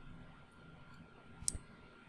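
A single computer mouse click about one and a half seconds in, over faint room tone.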